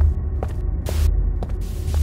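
A low, steady droning hum with short footstep clicks on a hard street surface, about two a second.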